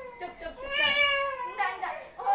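An infant crying and whining in two or three drawn-out, high-pitched wails, the longest about a second in.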